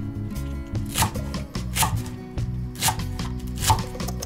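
Chef's knife chopping green onions on a wooden cutting board: four sharp cuts roughly a second apart, the last the loudest, over background music.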